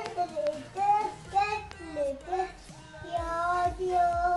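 A young girl singing a nursery rhyme in a sing-song melody, with a few low thumps near the end.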